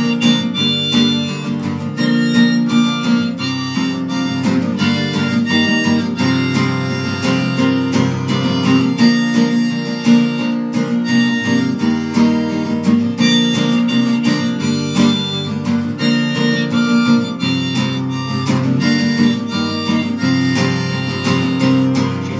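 Harmonica playing a melody over acoustic guitar accompaniment, an instrumental break with no singing.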